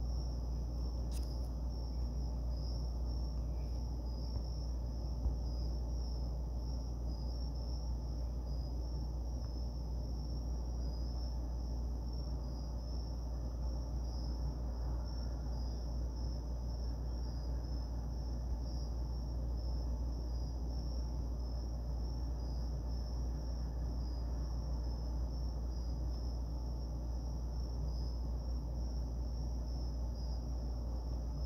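Steady background noise: a strong low hum with a faint high-pitched trill pulsing evenly above it, like an insect's chirping.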